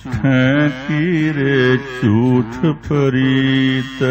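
A man singing the Gurbani shabad in Raag Devgandhari in a chanted, melodic style, with long held and wavering notes. There are brief breaks between phrases.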